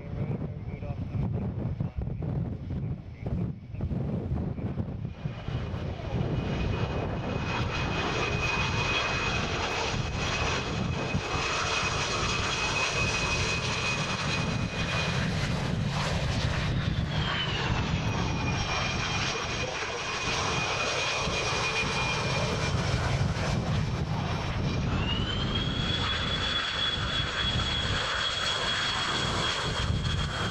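McDonnell Douglas CF-18 Hornet's twin jet engines running at high power with a steady high whine over a deep rumble, as the fighter moves along the runway. The whine drops in pitch about halfway through as the jet goes by, then rises again and holds near the end; wind buffets the microphone at the start.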